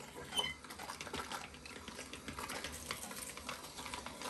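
Sausage stuffer pushing wet ground frog-leg meat into a casing: faint, rapid, irregular clicking and crackling as the casing fills.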